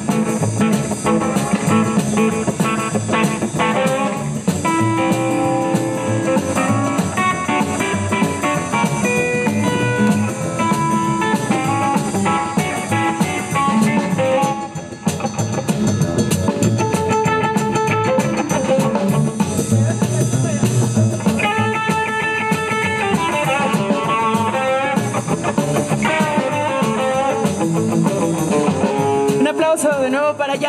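Live swing jazz band playing an instrumental passage: a plucked-string melodic lead over double bass and drum kit.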